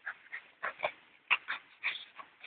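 A dog making a quick, irregular series of short sounds, about seven in two seconds.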